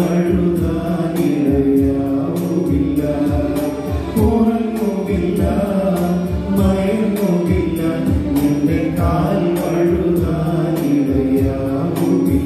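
A small church choir of women with a priest singing a Malayalam hymn in unison into microphones, with a steady percussion beat underneath.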